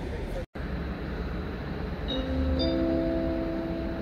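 Two-note electronic chime from the station's public-address system, signalling an announcement: a lower note about two seconds in, a higher note half a second later, both held steady for over a second. A steady low rumble of station background runs beneath it.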